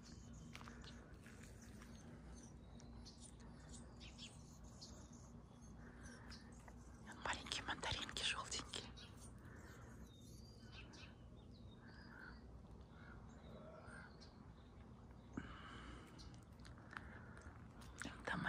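Quiet outdoor ambience with a few faint bird calls, and a short stretch of quiet whispering about seven seconds in.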